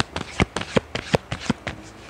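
A tarot deck being shuffled by hand, the cards clicking against each other in a quick, uneven run of sharp clicks, about four or five a second.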